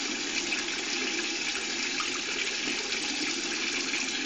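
Water running steadily from a bathroom tap into the sink, a constant even hiss.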